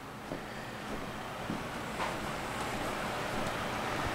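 Steady rain heard from inside the house, a soft even hiss with a few faint taps.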